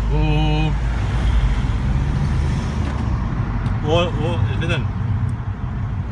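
Steady low engine and road rumble of a car being driven, heard from inside the cabin. A voice holds a note briefly at the start and calls out a few syllables about four seconds in.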